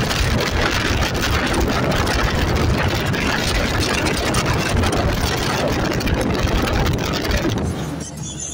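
Car driving along a road, heard from inside the moving car: steady engine, tyre and wind noise that drops away near the end.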